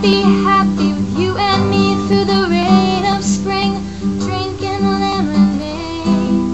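A young woman singing a country-folk song, with strummed acoustic guitar accompanying her.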